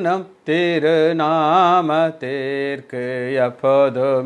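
A man singing a slow devotional prayer song, holding each note in a chant-like melody, with short breaks between phrases. The singing starts about half a second in.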